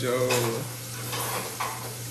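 A man says a word and breaks into a short laugh, followed by a few soft breathy laughs. Underneath is a steady low hum with hiss.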